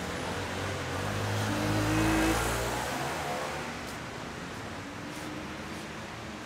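A motor vehicle driving past on the street, its engine note rising as it accelerates, loudest about two seconds in, then fading away.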